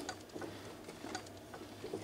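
Faint, irregular light clicks and ticks as a Permobil M3 power wheelchair is rocked by hand, its drive-motor plate shifting on its pivot against the small rubber damper.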